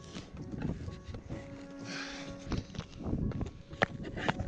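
Footsteps on icy, crusted snow, a run of irregular short knocks with one sharp click near the end, over soft background music with long held notes.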